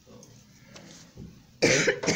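A person coughing: one loud, sudden cough near the end.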